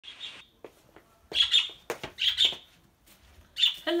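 Caged pet birds chirping: four short bursts of high calls, about a second apart.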